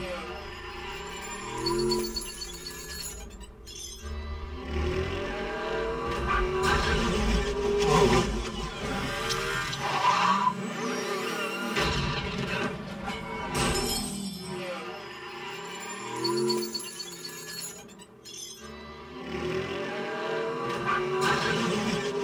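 Action-movie car-race soundtrack played loud through XTZ home theater speakers: score music with cars rushing past and crashing, shattering debris. Partway through, the same passage plays again on the speakers alone with the subwoofers off, and the deep bass drops away.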